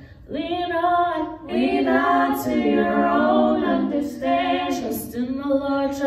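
Three women singing a gospel song a cappella in harmony, holding long notes, with short breaths between phrases near the start and about four seconds in.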